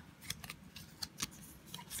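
Handling noise: a series of short, irregular light clicks and rustles as small craft items and their tags are picked up and moved by hand.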